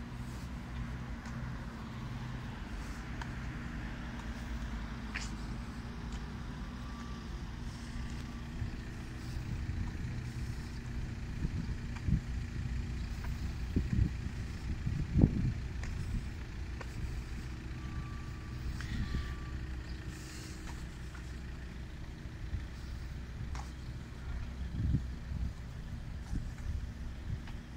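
City road traffic: a steady low engine rumble from cars and heavier vehicles on the street, swelling loudest about halfway through.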